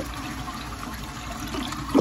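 1955 Eljer Duplex toilet flushing with the tank flapper held open: a steady rush of water as the bowl swirls and siphons down the trapway, growing sharply louder right at the end.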